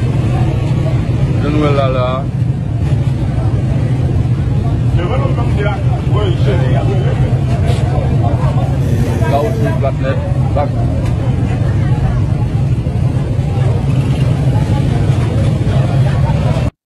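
Steady low rumble of a running vehicle engine, with scattered voices of people in the street.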